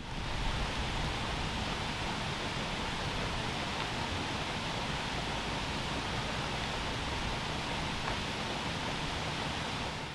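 Steady rushing of flowing water, an even hiss that holds at one level with no breaks.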